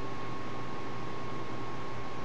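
Steady background hiss with a faint, constant high hum: the recording's room tone.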